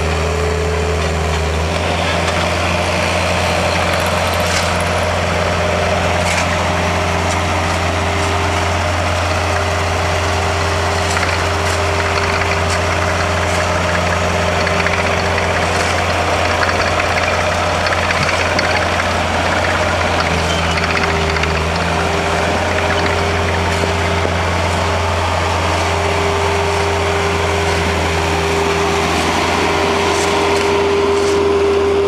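Diesel engines of a Bobcat skid-steer loader and a small tractor idling, a steady low drone, with occasional faint knocks and scrapes of shovels and picks on packed ice.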